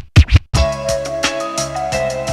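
Turntable scratching: a few quick scratch strokes on a record, then a brief gap. About half a second in, a hip-hop beat with a held melodic loop drops in.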